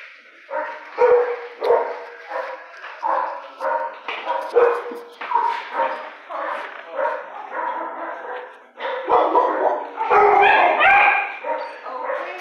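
Shelter dogs barking repeatedly, about two barks a second, with the loudest, densest barking about ten seconds in.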